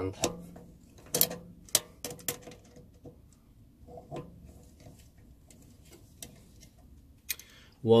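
Adjustable spanner clicking against a pair of jam nuts as it is worked round and refitted to unscrew a threaded steel stud from a mini lathe. A few sharp metal clicks in the first three seconds, and one more near the end.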